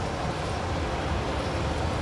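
Electric gear motor and chain drive turning the paddle agitator of a drying oven, running steadily with a low hum.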